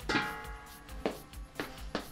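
A sharp metallic clank with a short ringing tail, then three lighter clicks about half a second apart. It comes from a breaker bar and socket on the flywheel nut of a Mazda RX-8 rotary engine, with the flywheel held still by a homemade locking tool.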